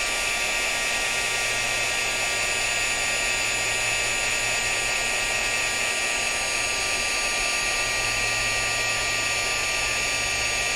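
Handheld craft heat gun running steadily on high heat, a constant rush of blown air with a steady fan whine.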